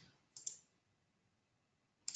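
A short pair of computer mouse-button clicks, a right-click, about half a second in; otherwise near silence.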